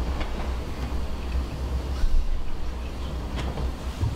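A steady low hum of room noise picked up by the microphone, with a few faint light knocks and no speech.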